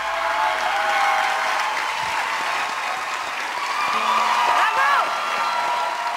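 Studio audience applauding, with a few cheering voices rising above the clapping about four and a half seconds in.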